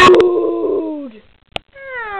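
A sharp knock, then a long drawn-out call that drops in pitch at its end; a click about one and a half seconds in, then a second long call sliding steadily down in pitch.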